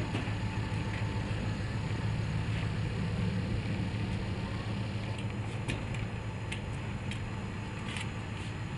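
Vehicle being refuelled from a gas-station pump nozzle: a steady low hum, with a few light clicks in the second half.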